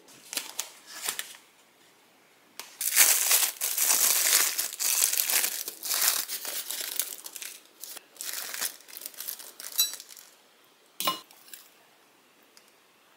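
Thin plastic bag crinkling and rustling as hands pull it open inside a styrofoam box, in a long busy stretch after a few short rustles. A single short knock near the end.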